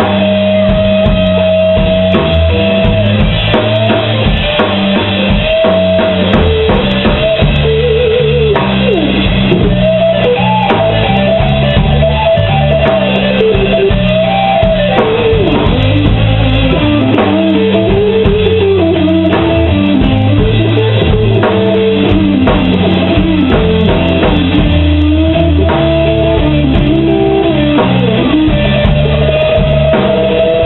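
Live rock band playing an instrumental passage on electric guitars and drum kit, loud and steady throughout, with a lead line that bends up and down in pitch over a low, steady part.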